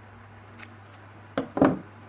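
Small scissors snipping a paper sticker: two quick cuts close together about one and a half seconds in, after a faint click.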